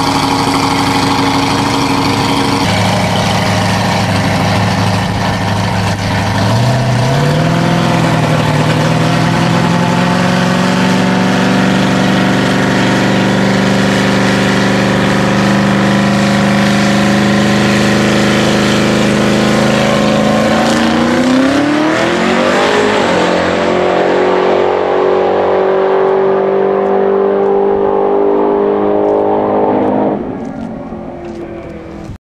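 Twin-turbocharged 383 cubic inch V8 of a VH Holden Commodore drag car running loudly. Its note jumps up about seven seconds in and climbs slowly. About 21 seconds in it rises sharply, then settles to a steadier, duller note that fades near the end.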